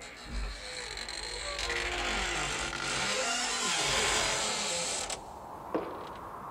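A door creaking slowly open as a recorded sound effect, its drawn-out creak sliding down in pitch and cutting off about five seconds in. A single footstep lands near the end.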